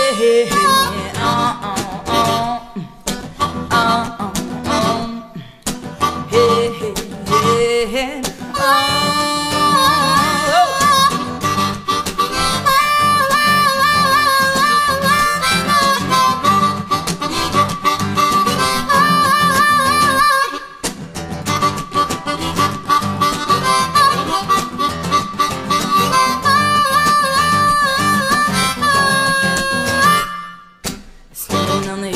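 Live blues-rock band's instrumental break: a harmonica solo of held, wavering notes over strummed acoustic and electric guitar accompaniment.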